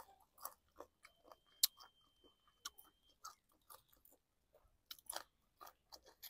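A person chewing food close to a clip-on microphone, a run of irregular small clicks and crunches of the mouth at work.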